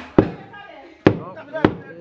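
Heavy blows of a long-handled hammer striking on a building site: three sharp impacts, a little under a second apart.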